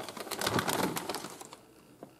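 Thin plastic packaging bag crinkling as it is grabbed and handled, a dense crackle that lasts about a second and a half and then fades.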